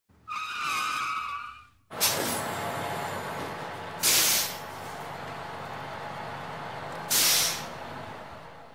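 Bus sound effects for an intro sting: a horn-like tone held for about a second and a half, then a vehicle engine running with two loud air-brake-like hisses about three seconds apart.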